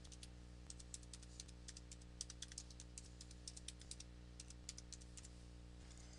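Computer keyboard being typed on, a quick, irregular run of faint key clicks as a word is typed in, over a steady low hum.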